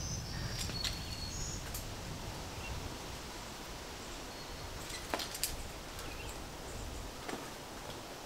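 Outdoor ambience at a forest crag: a steady low rumble that fades out near the end, a few brief high bird chirps in the first second or two, and several sharp clicks, two of them close together about five seconds in.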